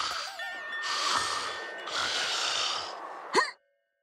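Dreamy cartoon soundtrack music with sustained hazy tones and a warbling note. About three and a half seconds in, a short rising sweep sounds, then everything cuts off suddenly into silence.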